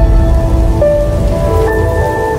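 Intro jingle for a channel logo: held musical notes that step to new pitches a couple of times, over a dense low rumbling noise bed.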